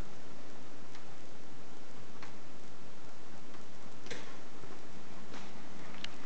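Rock-Ola Max 477 jukebox giving a few sharp, isolated clicks, spaced a second or more apart, over a steady hiss; no music is playing yet.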